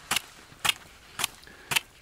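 Tip of a trekking pole tapping the ice of a frozen-over stream ford: four sharp taps about half a second apart.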